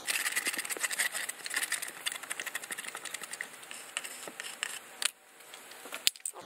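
Resin being stirred in a small plastic cup: a fast, uneven run of small clicks and scrapes that stops suddenly about five seconds in.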